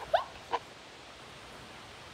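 Two short, high squeaks of a voice, each falling in pitch, close together early on, then quiet room tone.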